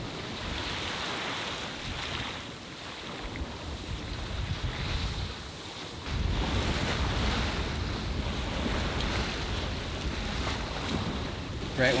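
Wind buffeting the microphone and water rushing past the hull of a sailboat under sail in a stiff breeze on a choppy sea. About halfway through, the low wind rumble on the microphone gets louder.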